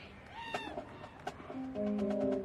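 A single short cry that rises and falls in pitch, over faint crowd background; near the end the marching band comes in with held, sustained notes.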